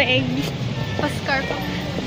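Brief snatches of women's voices and laughter over a steady low rumble of city street noise.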